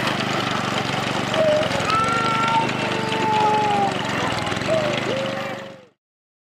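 Small engine of a walk-behind rice harvesting and bundling machine running steadily, with a toddler wailing over it. The sound fades out near the end.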